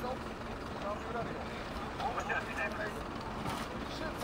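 Voices calling out faintly here and there over a steady low background rumble.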